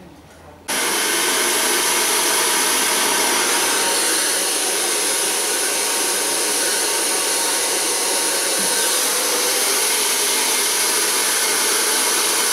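Handheld hair dryer blowing a steady, loud rush of air, starting abruptly less than a second in.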